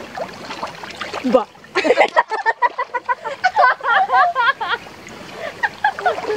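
Water splashing and sloshing as several women move about in a swimming pool, with their high-pitched shouts and squeals from about two seconds in until nearly five seconds.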